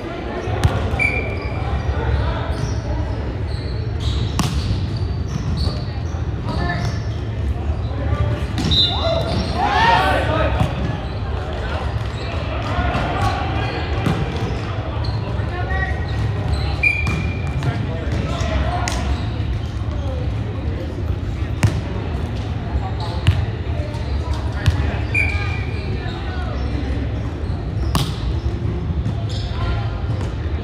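Indoor volleyball rally sounds in a large, echoing gym: sharp slaps of the ball being hit and bouncing on the hardwood floor, scattered among players' voices, over a steady low rumble.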